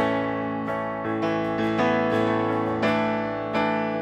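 Acoustic guitar strummed and digital piano playing sustained chords together in an instrumental worship-song passage, with a new chord struck about once a second.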